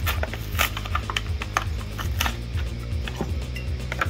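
Crinkling and sharp clicks of a clear plastic blister pack being handled and opened, with the metal miniature's parts tipped out of it. Background music with a steady low bass beat runs underneath.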